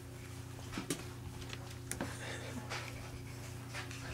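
A quiet room with a steady low hum, broken by a few faint short sounds from a baby crawling on carpet: one about a second in, one at two seconds and one near the end.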